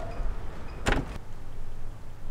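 A car door being shut: one sharp thud about a second in.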